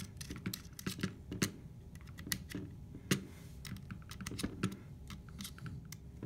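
Irregular small clicks and taps of metal parts being handled: the scale's mount clamp being seated on the microscope stage and its screws turned in by hand.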